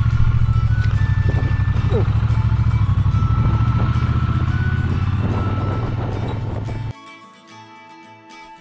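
Triumph Bonneville T120 parallel-twin engine running steadily as the motorcycle rides off at low speed, with music faintly beneath. About seven seconds in the engine sound cuts off suddenly and only background music remains.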